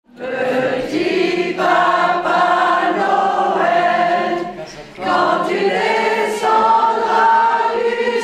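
A group of women singing a Christmas carol together in chorus, with held notes and a short break in the singing about four and a half seconds in.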